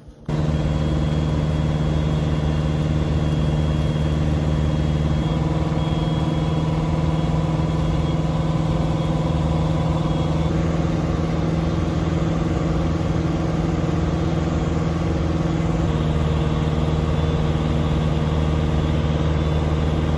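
Piper Super Cub's four-cylinder engine and propeller droning steadily in cruise flight, heard from inside the cockpit.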